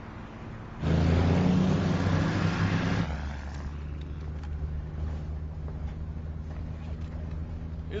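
A vehicle engine in a film soundtrack, running with a steady low drone. About a second in it surges much louder for two seconds, then settles back.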